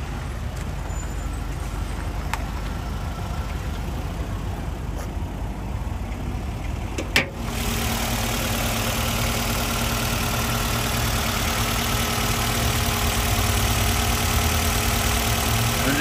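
2012 Nissan Rogue's 2.5-litre four-cylinder engine idling steadily, heard close up over the open engine bay from about halfway through. Before that there is a duller low rumble, and there is a single sharp click just before the change.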